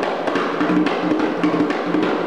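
Hand drum played with bare hands in a fast, even rhythm of many quick strokes, some strokes ringing with a low tone.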